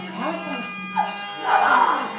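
Harmonium holding steady sustained notes as a drone, with a performer's voice over it in short sliding phrases.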